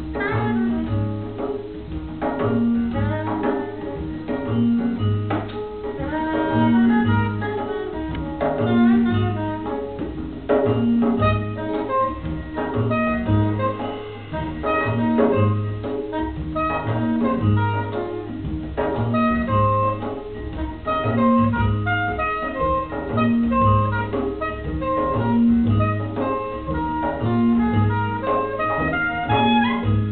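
Live acoustic jazz quartet playing: soprano saxophone, upright double bass, acoustic guitar and hand percussion with cymbals. The bass repeats a low figure about once a second under the melody.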